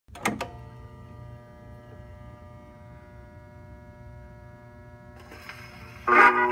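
Acoustic gramophone's needle set down on a spinning 78 rpm shellac record: a couple of sharp clicks just after the start, then a steady low rumble. A faint groove hiss with a few ticks comes in near the end, in the lead-in groove before the music.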